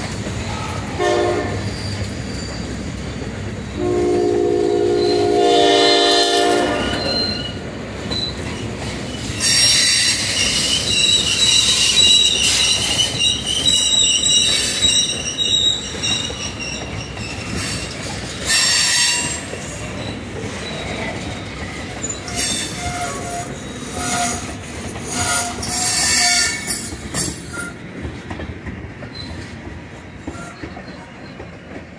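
Freight train of tank cars rolling past with a steady rumble, its wheels squealing on the rails in high-pitched squeals that come and go. About four seconds in, a train horn sounds a chord for about three seconds.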